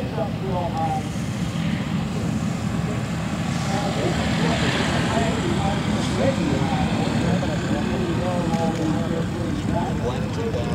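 North American T-28 Trojan's radial engine and propeller running steadily as the aircraft rolls along the runway, with people talking over it.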